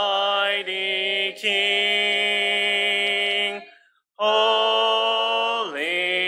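Unaccompanied hymn singing led by a man's voice, in long held notes with a breath break about four seconds in.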